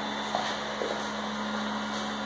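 The built-in electric blower fan of an airblown inflatable running steadily, a low hum with a hiss of moving air, keeping the inflatable fully inflated. A couple of faint clicks sound over it.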